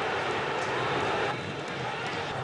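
Stadium crowd noise: a steady wash of many voices from the stands, dipping slightly a little past halfway.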